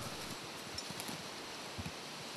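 Quiet forest ambience: a steady soft hiss with a few faint clicks.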